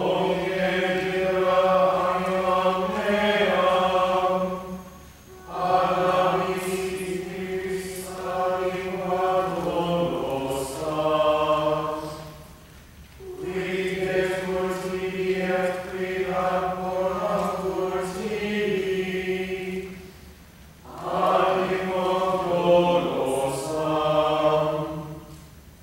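Small mixed choir chanting Latin plainchant in unison, in four long phrases with short breaths between them; much of each phrase is held on one pitch.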